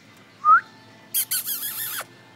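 A person whistling: a short rising whistle about half a second in, then a breathy whistle with a wavering pitch through the second half.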